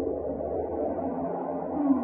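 Electronic drone music from a small desktop synthesizer: a steady low drone under layered, wavering tones, with a brief swell near the end.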